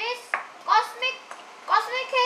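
A child talking.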